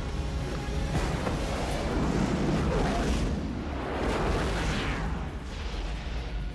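Film soundtrack mix: a dense, steady rumble of spacecraft rocket engines at full burn, layered with a music score.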